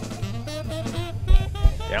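Background music with plucked guitar-like notes over a bass line, and two low thumps around the middle. A man's voice starts talking right at the end.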